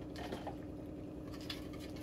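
Faint handling of a clear plastic packet of kelp cubes: a few soft crinkles, the clearest about one and a half seconds in, over a low steady room hum.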